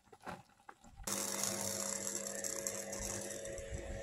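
A few faint clicks, then, about a second in, a steady machine-like hum with hiss starts suddenly and holds at an even level.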